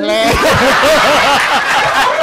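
A large audience and the judges laughing together, loud and continuous, many voices overlapping.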